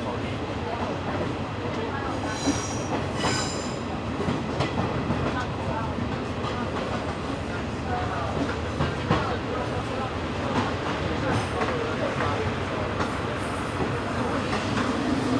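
Steady rumble of an old Taiwan Railway passenger coach running on the track, heard from inside the car, with clicks from the wheels and rail joints. Two short high squeals come about two to three seconds in.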